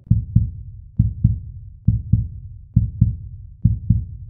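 Heartbeat-style sound effect over end credits: low double thumps in a steady lub-dub rhythm, five pairs about a second apart.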